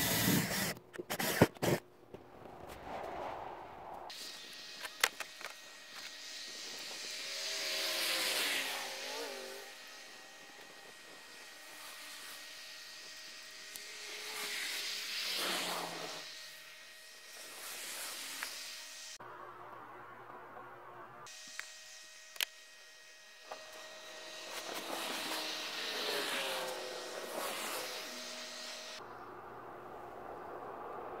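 A DeWalt cordless drill runs briefly in short bursts over the first two seconds, pre-drilling a pilot hole through a stainless steel chimney roof bracket into the bus's sheet-metal roof. After that comes a steady outdoor background in which vehicles pass by about three times, each rising and falling away, with a few sharp clicks.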